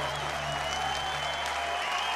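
Large crowd applauding and cheering as a song ends, with a low held note from the stage fading out about one and a half seconds in.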